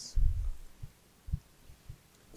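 Microphone handling noise: a dull low thump just after the start and a shorter one a little past the middle.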